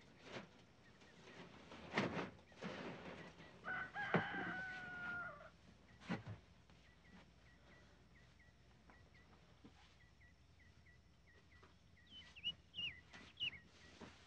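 A rooster crowing once, a long held call that drops at its end, after a few brief rustles and thumps. Small birds chirp in the background, louder near the end.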